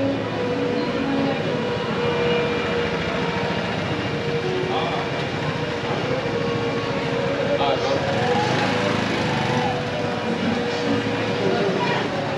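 Street ambience with a small motor scooter's engine running as it rides along the street, under passers-by talking now and then.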